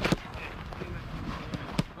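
A football kicked hard on grass, one sharp thud right at the start, with a second thud near the end. A low rumble of wind on the microphone lies under both.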